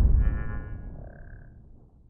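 Logo-reveal sound effect for an intro title: the low rumbling tail of a boom fading out, with brief high ringing tones over it in the first second and a half.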